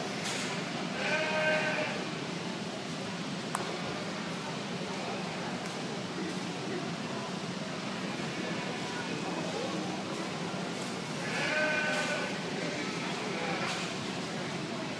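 Show lambs bleating: two calls of about a second each, one near the start and one near the end, over the steady murmur of a crowded arena.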